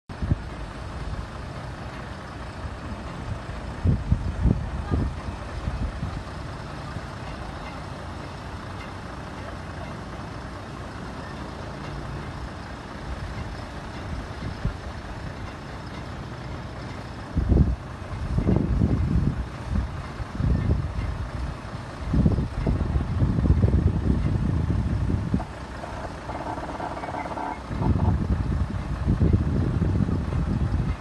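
Outdoor ambience with irregular heavy low rumbles near emergency vehicles. About 26 seconds in, a short spell of tones sounds over it.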